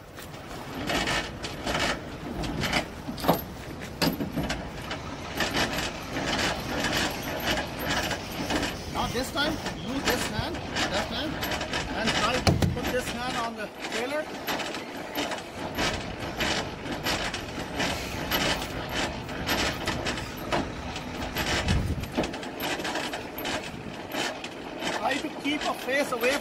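Semi-trailer landing gear being cranked up by hand: a steady run of clicks and rattles from the crank and its gearing, with two low thumps along the way.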